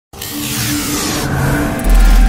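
Logo-intro sound effects: a swelling whoosh with a few held tones and a slow falling sweep, ending in a deep boom just before the end.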